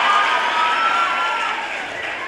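Audience applauding, dying away in the second half.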